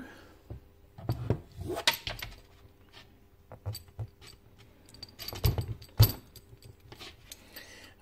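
Handling noise of a homemade scope-camera adapter, a rubber sleeve with a metal hose clamp, being fitted over a rifle scope's eyepiece: scattered clicks, taps and knocks, the loudest a sharp knock about six seconds in.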